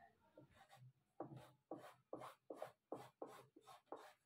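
Tailor's chalk scratching on fabric as a curve is sketched freehand: faint, short strokes, about three a second, starting about a second in.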